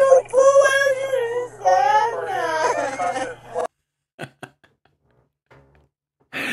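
A woman's voice crying in long, wavering wails with no clear words. It cuts off suddenly about three and a half seconds in, leaving near silence broken by a couple of faint clicks.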